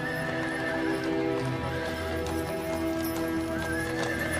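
Horses of a mounted cavalry troop, with hooves and neighing, under a film score of long held notes.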